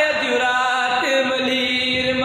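A man chanting Sindhi devotional verse in a slow melody, with long held notes that waver and bend in pitch.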